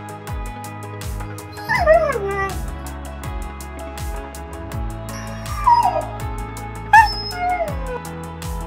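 Background music with a steady beat, over which a dog whines three times, each call gliding down in pitch: about two seconds in, at about five and a half seconds, and near the end, the last starting loudest.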